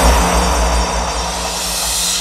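Hardstyle electronic music at a transition: a whooshing noise sweep over a sustained low bass tone, fading down steadily.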